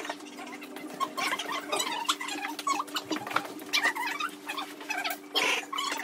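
Kitchen sounds during a meal: a steady low hum runs throughout, with frequent light clicks and clinks of dishes and utensils and short squeaky sounds scattered over it.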